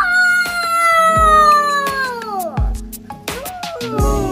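A young girl's long, high-pitched vocal cry, held for about two and a half seconds and then falling away in pitch, over background music with a steady beat.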